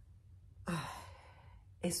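A woman's audible sigh: a short voiced onset that falls away into a breathy exhale, about two-thirds of a second in and lasting roughly a second. She begins speaking again near the end.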